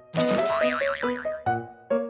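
Playful jingle for a segment title card: a whoosh with a warbling, wobbling effect tone over the first second, over a run of short separate musical notes.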